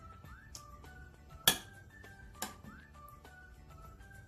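Soft background music playing, with two sharp clinks of a metal spoon against a glass baking dish, the first and louder about a second and a half in, the second about a second later.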